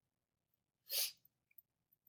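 A single short, sharp breath noise close to the microphone about a second in, followed by a few faint clicks.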